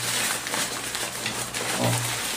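Nylon fabric of a collapsible drone landing pad rustling and crinkling, steady, as it is twisted and folded down by hand.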